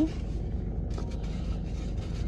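Steady low rumble inside a parked car, with brief rustling and scraping of people shifting on the seat about a second in.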